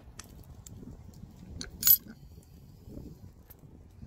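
A house key jingling and small metal clicks as it is put into a key lockbox, with one sharp, loud click just before two seconds in.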